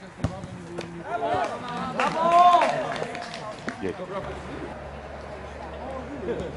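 Men's voices shouting out on a football pitch, the loudest a single drawn-out call about two seconds in. A sharp knock sounds just after the start.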